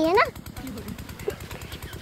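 A stationary diesel pump engine running steadily at a distance, with a rapid, even putter. A voice finishes a word just as it begins.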